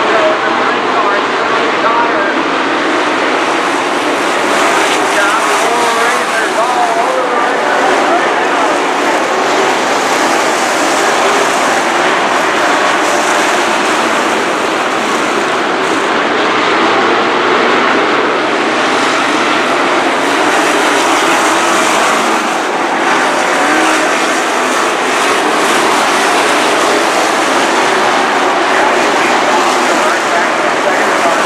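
A pack of dirt-track sport modified race cars running laps, their V8 engines revving up and down in a continuous loud din.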